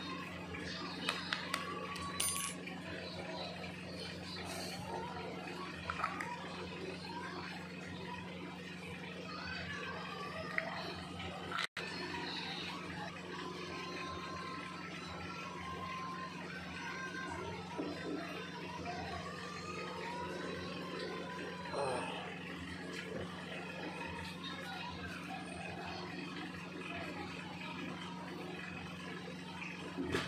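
Indistinct background voices over a steady low hum, with a few light metallic clicks in the first couple of seconds as a thin metal wire is set down on paper. The sound cuts out for an instant about a third of the way in.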